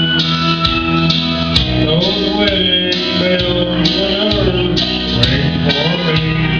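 Country song with guitar accompaniment and a man singing long held notes into a microphone.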